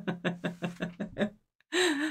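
A woman laughing in a quick, even run of breathy 'ha' pulses, about six a second, that breaks off suddenly a little over a second in. After a short silence her voice starts again near the end.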